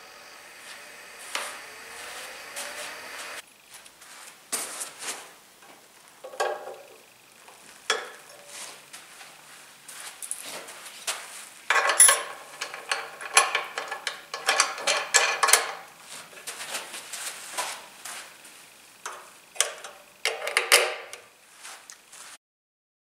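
Irregular clicks, knocks and rattles of plastic and metal parts being handled and fitted onto a BOLA Junior bowling machine's head and ball-feed cage, busiest in two spells in the second half. A faint steady hum comes first and stops about three seconds in.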